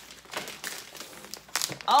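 Black plastic garbage bag crinkling in irregular rustles as it is pulled and unwrapped by hand from a taped package.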